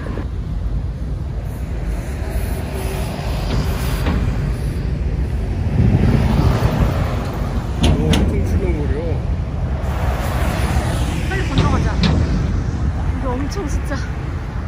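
Road traffic on a bridge: a steady heavy rumble of cars and large vehicles going by close at hand, swelling about six seconds in and again around eight seconds as big vehicles pass.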